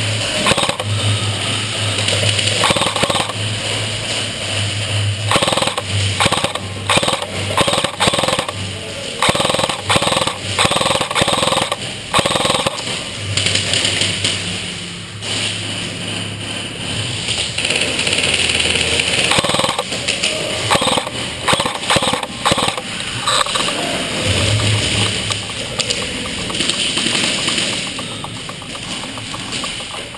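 Rapid strings of shots from players' game guns, ringing around a large indoor hall, coming and going throughout.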